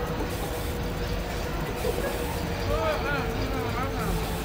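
Busy street ambience: a steady rumble of background noise with a constant hum, and a voice wavering up and down about three seconds in.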